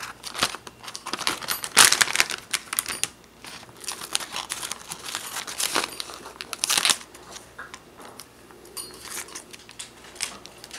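A small thin foil piece from a candy kit's packaging being cut out and handled: irregular crinkling and snipping, loudest about two seconds in and again near seven seconds.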